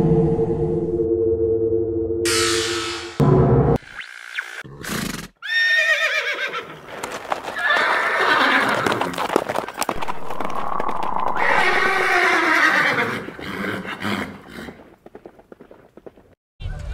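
Intro soundtrack: a logo sting of steady held tones and a whoosh, then horse whinnies falling in pitch, with hoofbeats, over music. It fades out near the end.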